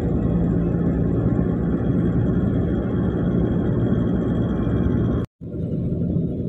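Road and engine noise inside a moving car's cabin: a steady rumble with a low hum. About five seconds in it cuts out completely for a moment and comes back quieter.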